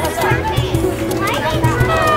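A song with a steady beat, with children's voices over it.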